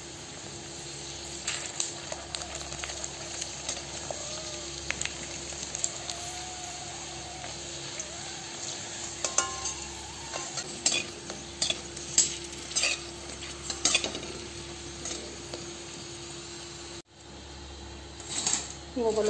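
Pani puri shells sizzling steadily as they deep-fry in hot oil in a metal wok. A perforated metal slotted spoon clinks and scrapes against the wok as the puris are turned and lifted, most often in the second half.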